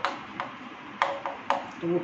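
Chalk tapping and scraping against a blackboard while words are written, with a handful of sharp taps.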